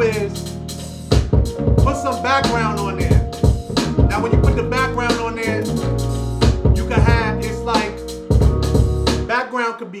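A hip hop beat with bass, drums and a rapped vocal playing back loudly, then cut off suddenly near the end.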